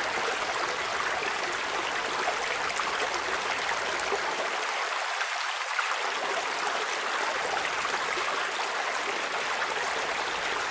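Field recording of running water, a steady splashing hiss, played back through a high-pass filter whose cutoff is being swept. The low city rumble under the water drops away about five seconds in and comes back a second or so later as the cutoff is pulled back down.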